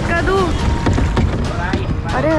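Kayaking on a river: people in the kayaks talking over a steady low rumble of wind on the microphone and water noise.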